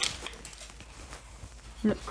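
A brief rustle right at the start, then faint, steady room noise.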